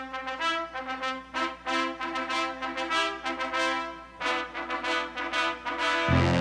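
Brass music: a melody of short notes, several a second, over held lower notes.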